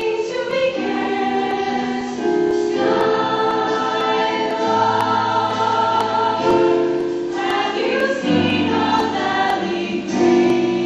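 A show choir singing a jazz arrangement in close harmony, holding long chords that shift every second or two.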